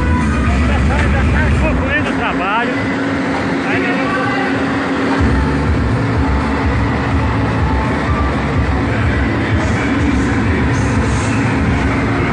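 Loud crowd voices over a heavy low rumble beside a carnival sound truck. The low rumble drops away for about three seconds, starting about two seconds in, then returns.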